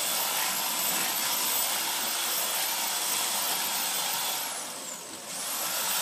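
Sears Craftsman 3/4 hp garage door opener running a sectional overhead door down, a steady whirring noise of the motor and the door travelling on its track. The noise dips briefly near the end as the door reaches the floor.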